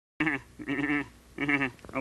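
A Muppet character laughing: three short, wavering syllables about half a second apart.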